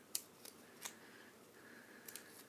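Paper being handled and folded between the fingers, faint, with three short, sharp, crisp crackles in the first second as the folded paper is bent and creased.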